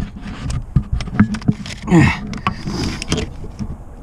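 Socket, extension and hands knocking and scraping against parts in the engine bay while the oil pressure sensor is being fitted: scattered clicks and knocks, with a short falling sound about halfway through.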